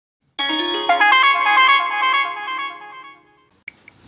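A short bright chime jingle: several ringing notes struck in quick succession, then held and fading out about three seconds in.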